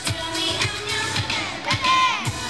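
K-pop dance song playing loud through the stage sound system, with female vocals over a steady drum beat.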